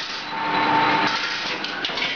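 Straightening and cut-to-length machine for steel strip running: a steady mechanical whir with a held high hum, and a couple of sharp clicks near the end.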